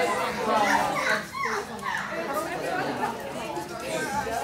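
Overlapping chatter of many children's voices talking at once in a classroom.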